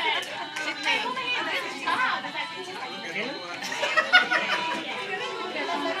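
Several voices chattering at once, young children calling out among them, with a louder cry about four seconds in.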